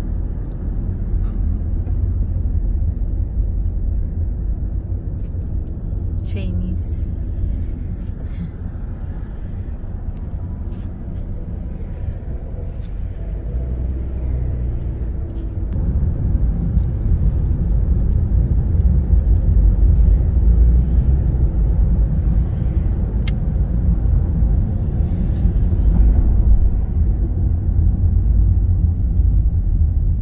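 Car cabin noise while driving: a steady low rumble of tyres and engine, which grows louder about halfway through.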